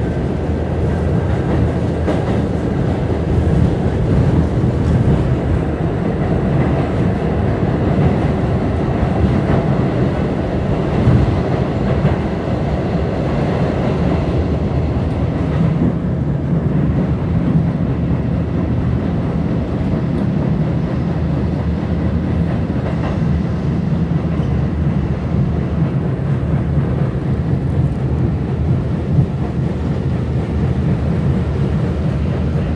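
New York City subway N train running at speed, heard from inside the car: a steady, loud rumble of wheels on rails. The higher rattle and hiss ease off about halfway through while the low rumble carries on.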